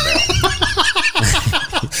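Hearty laughter, a quick run of high 'ha' pulses that fall in pitch, several a second.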